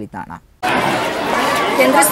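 A single voice trails off, then from about half a second in a crowd of people is chattering all at once, many voices overlapping.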